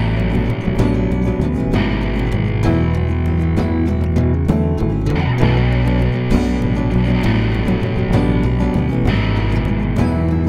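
Instrumental break in a song: distorted electric guitar over bass guitar and a steady beat, with no singing.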